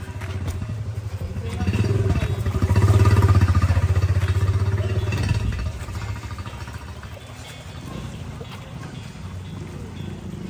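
Small motorcycle engine passing close by: it grows louder over the first couple of seconds, is loudest about three seconds in, then fades away by about six seconds.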